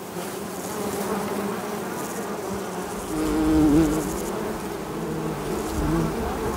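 Bumblebees buzzing, a steady hum, with one bee's buzz growing louder and wavering in pitch about three seconds in.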